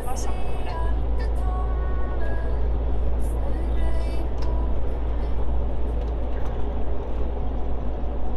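Steady low rumble of a vehicle driving along a road, heard from inside the cab, with a radio playing speech and music over it.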